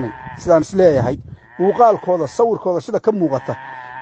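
Speech only: a man talking in a recorded voice clip, with short pauses between phrases.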